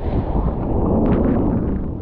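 Sea wave breaking close to a water-level camera, its whitewater rushing and churning as a loud, steady noise that builds at the start and eases near the end. Wind is buffeting the microphone.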